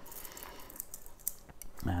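Metal link watch bracelet clicking and clinking faintly as it is wrapped around a wrist and fastened, in a few scattered light clicks.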